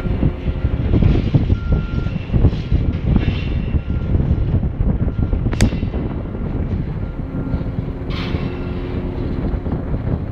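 Heavy, steady mechanical rumble of the A-frame's boom hoist working as the boom is lowered on its wire ropes. Short high beeps sound now and then, and there is one sharp click about halfway through.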